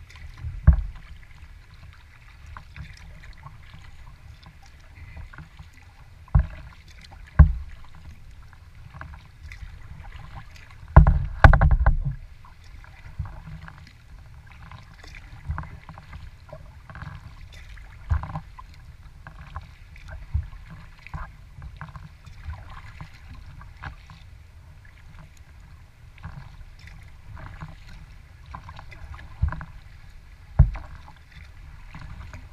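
Kayak moving through small waves: water lapping and splashing against the hull over a steady low rumble, with occasional sharp knocks, the loudest cluster about eleven to twelve seconds in.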